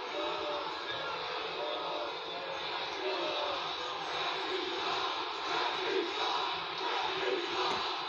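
Basketball arena crowd making a steady din of many voices with scattered shouts, heard through a TV's speaker.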